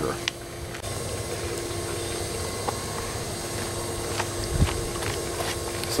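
Steady hum of a pool's circulation pump running, with one low thump about four and a half seconds in.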